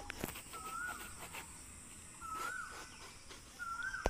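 A bird calling: a short whistle that slides up and then drops, repeated about every one and a half seconds, three times, over faint clicks and rustling.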